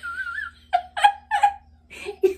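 A woman laughing on purpose as a laughter exercise: a high, wavering squeal, then three short bursts of laughter about a third of a second apart.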